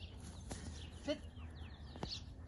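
Small birds chirping in the background over a steady low rumble, with a man's short spoken command "sit" to a dog about a second in.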